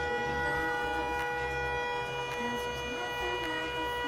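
Canon SELPHY dye-sublimation photo printer partway through a print, feeding the paper: a steady whine of several held tones over a low rumble that comes and goes.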